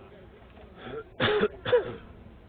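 A person close to the microphone coughs twice in quick succession, harsh and loud, a little past a second in, with a fainter throat sound just before.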